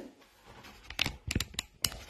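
Handling noise: a quick run of sharp clicks and knocks about one to two seconds in, as the phone camera is tilted down and things on the floor are moved.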